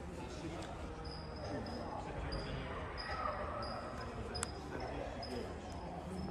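Ambience of a large hangar hall: indistinct visitors' voices and low thuds over a steady rumble. A faint high tone comes and goes in short dashes, and there is one sharp click about four and a half seconds in.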